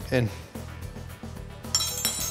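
A metal utensil clinks against a mortar near the end, a short bright ringing strike, over a steady bed of background music.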